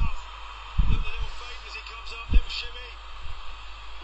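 Faint background speech with a few dull low thumps; the sharpest thump comes a little after two seconds in.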